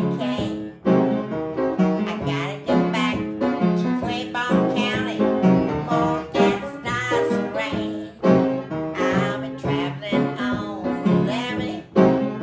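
Upright piano playing a blues tune, with a woman singing along.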